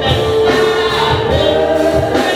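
A choir singing a gospel worship song with instrumental backing, the voices holding long notes over a steady bass.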